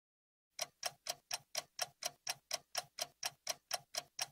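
Quiet, steady clock ticking, about four ticks a second, starting about half a second in.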